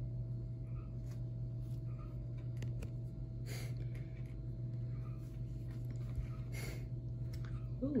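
A steady low hum of room tone, with two brief soft noises, one about three and a half seconds in and one near seven seconds.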